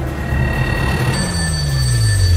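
A desk telephone ringing with steady high tones, growing louder about a second in. Under it, a low tone in the trailer music slides steadily downward.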